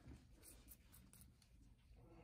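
Near silence, with a few faint scratches and ticks from a metal nail probe working at a toenail.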